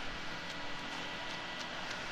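Faint steady background noise, an even hiss with no distinct knocks, clicks or voices.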